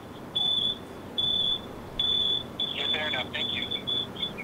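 A high electronic beep, one pitch, repeating in on-off pulses of about half a second and breaking into quicker, shorter beeps near the end.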